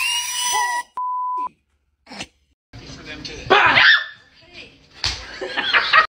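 People's voices and shouts in a scare prank, with a short, steady beep about a second in and a louder burst of shouting around three and a half seconds in.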